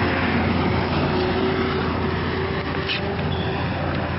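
Steady road traffic noise, an even rush with no distinct events.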